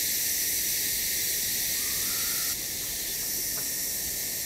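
Dense rainforest insect chorus: a steady high, hissing buzz of many insects, dropping slightly in level a little past halfway. A brief faint tone sounds about two seconds in.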